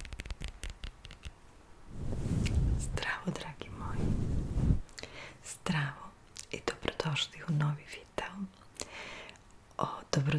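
Close-miked soft whispering by a woman. Light crackly clicks in the first second and a low rustling rumble from about two to five seconds in come from fingers rubbing the furry microphone windscreen.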